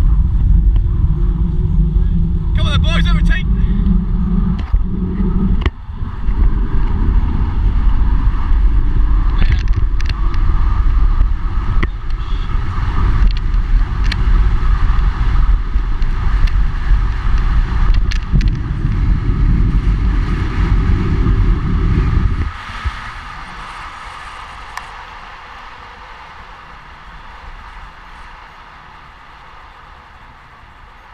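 Heavy wind buffeting on an action camera's microphone as a bicycle speeds downhill, a loud steady rumble. It cuts off abruptly about 22 seconds in, leaving a much quieter hiss of wind and tyres that keeps fading as the bike slows.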